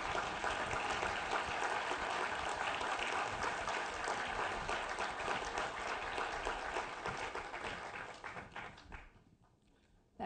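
Audience applauding: a steady spread of many hands clapping that thins out and fades away about nine seconds in.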